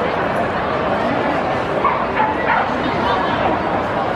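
Steady murmur of a ballpark crowd talking in the stands, with a few short, sharp calls standing out about two seconds in.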